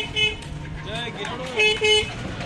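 A vehicle horn tooting two short beeps near the start and two more near the end, each beep one steady tone.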